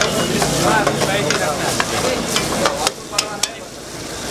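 A metal ladle scrapes and clinks against a steel frying pan as a gravy is stirred, over a light sizzle of frying. The clinks come thickest in the middle, and the sound drops quieter about three seconds in.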